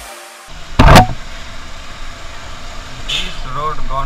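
Motorcycle riding along a street in traffic, its engine and road noise steady, with one sudden loud rush about a second in.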